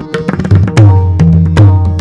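Pakhawaj solo in the nine-beat Mattaal: rapid sharp strokes on the right head mixed with deep, ringing bass strokes from the left head, over a harmonium playing the steady lehra melody.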